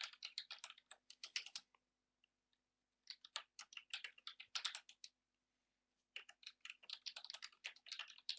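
Typing on a computer keyboard: three quick runs of keystrokes separated by pauses of a second or more, with a faint steady hum underneath.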